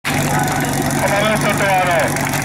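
Portable fire-pump engine running steadily, with people's voices over it.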